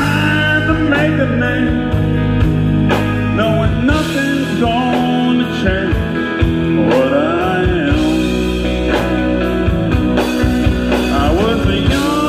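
Live country band playing an instrumental passage: drums, bass and strummed acoustic guitar under an electric guitar lead with bent notes.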